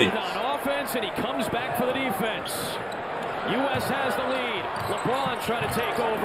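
Televised basketball game audio: a ball bouncing on a hardwood court under arena background noise, with a commentator's voice faintly underneath.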